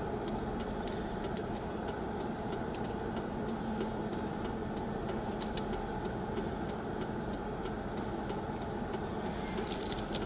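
Car interior noise heard from inside the cabin: a steady hum of engine and road noise with faint scattered clicks, as the car creeps along in slow traffic.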